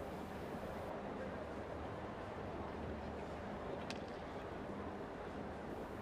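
Faint, steady background noise of an open-air show-jumping arena, with one sharp click about four seconds in.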